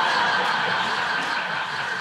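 An audience laughing together, the laughter slowly dying down toward the end.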